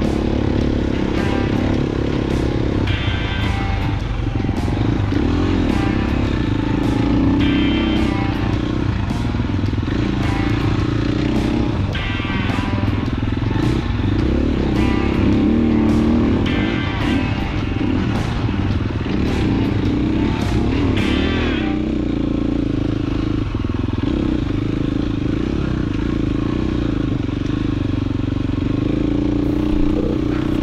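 2016 KTM 350 XCF single-cylinder four-stroke dirt bike engine running at varying revs while riding a trail, under background music with a steady beat. The music stops about two-thirds of the way in, leaving the engine alone.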